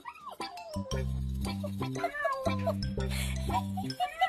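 Background music with a steady bass line, and a kitten meowing over it a few times, once right at the start and again around the middle.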